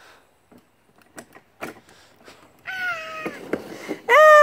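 Light plastic knocks and clatter as a toddler climbs into a plastic ride-on roller coaster car. About two-thirds of the way in, the car starts rolling down the hollow plastic track with a rumble, and a child's high squeal rises over it, falling slightly in pitch.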